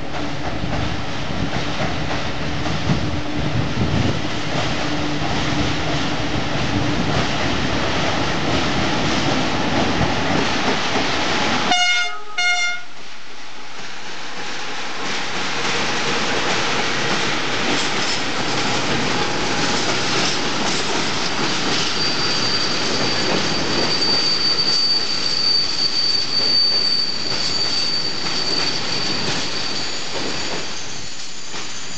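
Long freight train hauled by two class 40 (EA) electric locomotives rolling across a steel truss railway bridge: continuous rumble and clatter of wheels. A short horn blast sounds about twelve seconds in, and a thin, steady, high-pitched wheel squeal runs through the later part.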